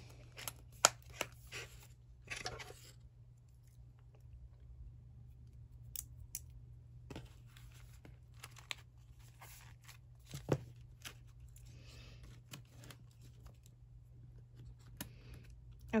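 Small metal binder clips clamped onto the top and bottom edges of a stack of paper journal pages: a sharp click about a second in, then scattered lighter clicks and soft paper handling.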